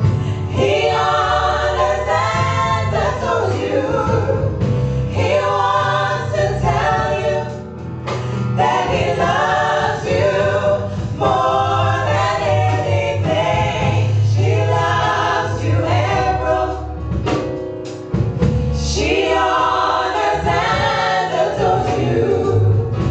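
A small group of women singing a gospel song in close harmony into microphones, in phrases with short breaths between them, over a steady low accompaniment.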